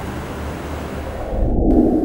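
A steady rushing noise over a low hum, swelling near the end and then cutting off abruptly.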